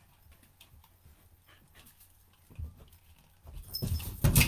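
Puppy playing with a ball toy on the floor: faint scattered taps and scuffles, a single thump a little past halfway, then louder knocks and scrabbling near the end.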